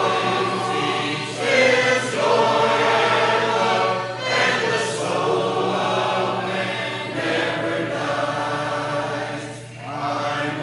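Church congregation singing a hymn a cappella in parts, many voices in long phrases with short breaks between them, one about four seconds in and another near the end.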